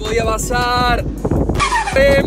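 A man's drawn-out, high-pitched wordless cries of dismay: one held steady, then one falling in pitch near the end, over low wind and outdoor noise.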